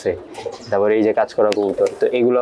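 Racing pigeons cooing in their loft, with a man's voice over them in the second half.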